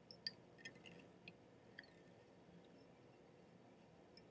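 Near silence, with a few faint, light clicks in the first two seconds from hands wrapping thread with a bobbin to tie pheasant tail fibres onto a hook in a fly-tying vise.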